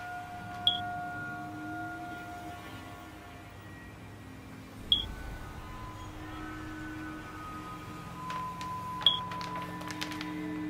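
Three short, high-pitched electronic beeps, about four seconds apart, over a quiet, sustained musical drone.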